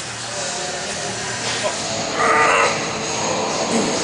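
A man's short, strained vocal effort during a heavy lift, about two seconds in, over steady background noise.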